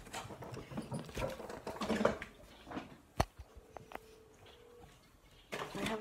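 Irregular knocks and rustles of movement and handling, with one sharp click about three seconds in and a louder scuffle near the end.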